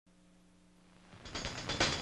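A faint low hum, then about a second in a fast, dense rattle that grows steadily louder.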